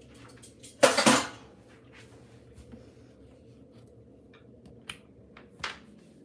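Metal kitchen utensils clattering down on a countertop about a second in, two quick clanks close together, followed later by a few light knocks and clicks.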